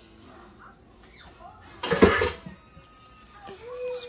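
A short, loud clatter about halfway through as the emptied cooking pot is put down on the counter, between quiet scrapes of a spatula spreading casserole in a baking dish.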